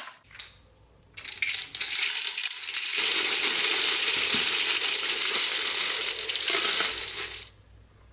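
Green plastic pyramid tumbling media poured into a vibratory tumbler bowl: a continuous clattering rattle that starts about a second in, grows louder, and stops shortly before the end.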